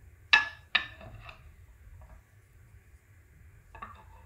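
Two sharp clinks about half a second apart, then a few lighter taps and another clink near the end: hard parts of a display stand's pole and base knocking together as they are handled and fitted.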